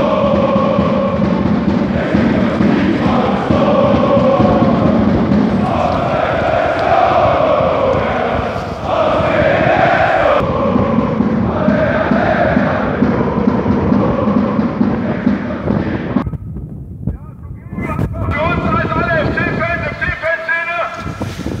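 A large crowd of football supporters chanting together in unison. About four seconds before the end the sound briefly goes muffled and thin, then closer voices come back in.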